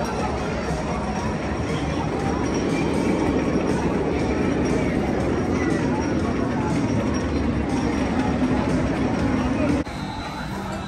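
SkyRush steel roller coaster train running on its track: a steady rushing noise that swells a little after a few seconds, over a background of crowd voices.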